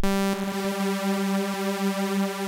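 Serum software synthesizer holding one steady sawtooth note, spread over several slightly detuned unison voices at different volumes, which makes the note sound much bigger.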